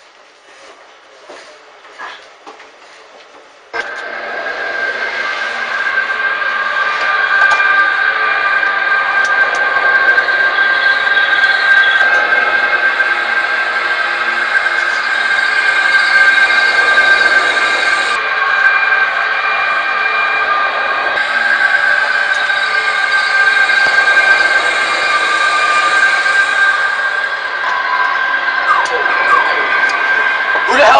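A loud, steady drone of several held tones that starts suddenly about four seconds in and holds unchanged.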